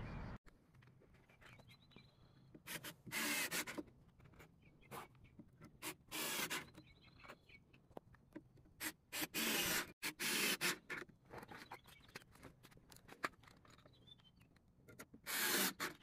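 Cordless drill driving screws into wooden framing boards in several short bursts, with quiet handling between them.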